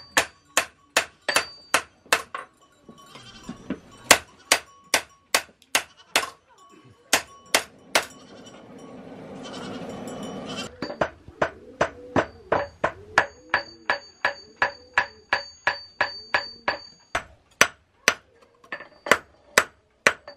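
A hand hammer striking a knife blade on a steel anvil at about three blows a second, each blow ringing, as the blade is forged. The hammering breaks off for a few seconds near the middle, where a goat bleats.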